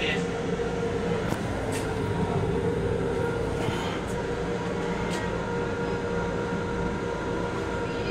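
Steady running noise of a Long Island Rail Road M7 electric railcar heard from inside its restroom: a rumbling hiss with a steady hum, broken by a few faint clicks.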